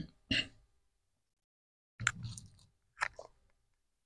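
A few short throat and mouth noises from a man at the microphone, like a throat clear and quick breaths, with dead silence between them.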